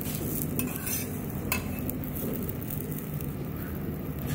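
Bread omelette sizzling on a flat black griddle while a metal spatula scrapes the pan and folds the egg over the bread, with a few short scrapes about half a second and a second and a half in.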